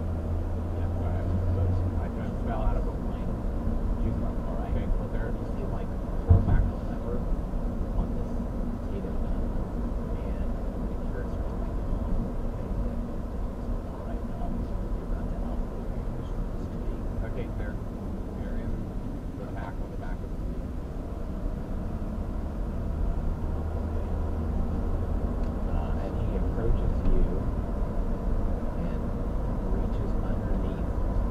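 Steady low rumble of road and engine noise inside a moving car as it gathers speed, with a single knock about six seconds in.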